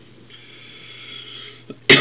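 A man with a head cold draws a long breath in through his nose, then gives a single sharp cough near the end.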